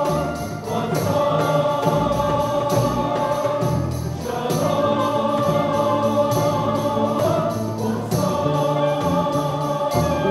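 A large mixed choir singing sustained chords with an orchestra accompanying, in phrases that break off briefly about four and eight seconds in.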